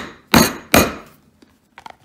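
Two sharp blows on the top of a brass eight-tooth leather stitching iron, about half a second apart, driving its teeth through the glued layers of a leather wallet to punch stitch holes. A few faint small clicks come near the end.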